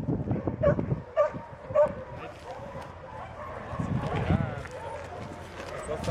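Small puppy giving three short, high yips in the first two seconds, then a wavering whine about four seconds in, with a man's low voice underneath.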